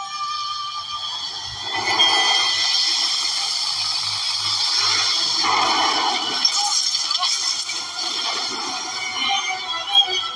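Soundtrack of a film clip: music mixed with sound effects, swelling about two seconds in and staying full.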